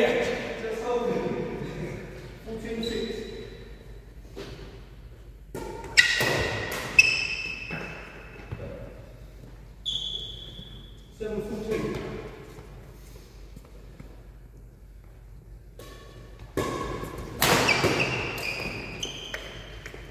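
Badminton rally in an echoing sports hall: sharp racket hits on the shuttlecock, the two loudest about a second apart a third of the way in, with short high squeaks and players' voices calling out.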